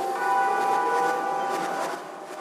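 Music of ringing bell-like tones, a fresh chord struck just after the start that rings on and then drops away near the end.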